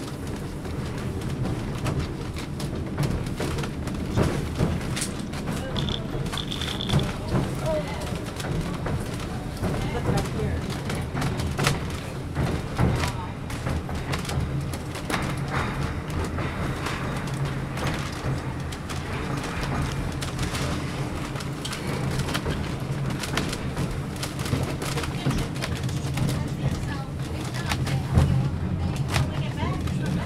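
Inside a passenger car of the White Pass and Yukon Route train while it rolls along: a steady low running rumble with frequent light clicks and knocks from the wheels and car body. A brief high tone sounds about six seconds in.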